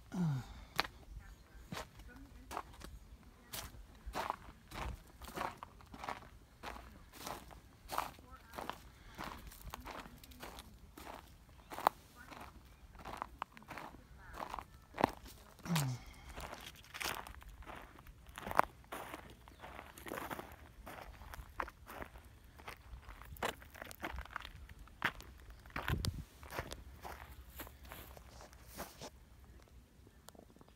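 Footsteps of someone walking on a dry path of dirt, stones and dry grass, a steady walking pace of short crunching steps.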